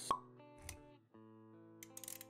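Intro music for an animated logo sequence: a sharp pop sound effect right at the start, a short low thump about half a second later, then, after a brief drop-out, steady sustained music notes resume.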